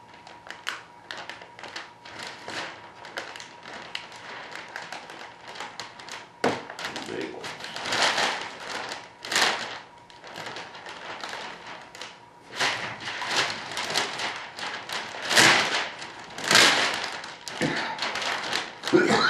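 Clear plastic bagging film crinkling and rustling as it is folded into pleats and pressed onto tacky tape, with light taps and knocks in between. The rustling comes in several louder swells over the second half.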